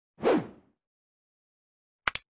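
A single whoosh sound effect for an animated intro, swelling quickly and falling in pitch as it fades within about half a second.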